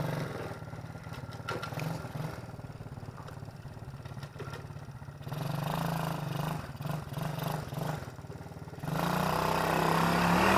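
125cc quad bike engine running at low revs, with a few short bursts of throttle in the middle, then revving up as the bike pulls away near the end.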